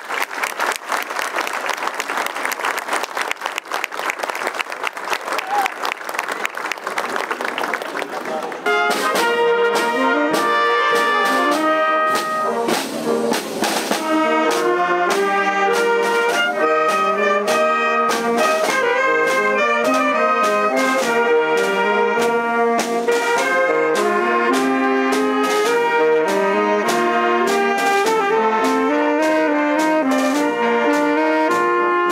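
Side drums of a drum corps rattling and rolling for the first nine seconds or so, then a wind band of trumpets, trombones, clarinets, saxophones and sousaphone takes over suddenly and plays on, louder.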